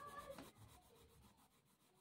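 Near silence with the faint, repeated scratch of a soft 10B graphite pencil shading back and forth on paper.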